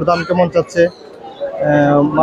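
Caged domestic pigeons cooing, with a steadier, held coo starting about three-quarters of the way in, among voices.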